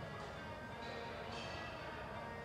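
Background music, a softer passage with steady bell-like ringing tones and little bass.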